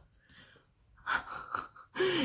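A woman's audible breath: a short breathy sound without voice lasting most of a second, starting about a second in.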